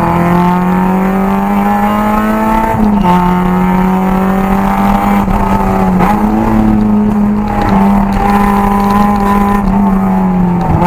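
Car engine under load heard from inside the cabin, revs climbing steadily and then dropping sharply at an upshift about three seconds in. It then pulls on at a fairly steady pitch with a small dip around six seconds.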